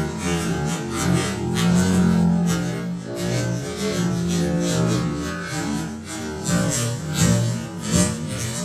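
Four-string bass guitar played solo: a quick run of plucked, changing notes, several a second.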